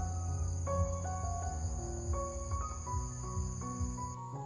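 Insects chirring in a steady high-pitched drone, over background music of changing melodic notes and a low rumble.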